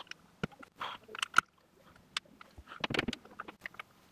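LEGO bricks being handled and pressed into place: a scatter of small plastic clicks and short rustles, the sharpest click about a second and a half in.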